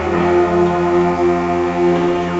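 School concert band playing a held chord, the parts changing to a new chord right at the start and sustaining steadily.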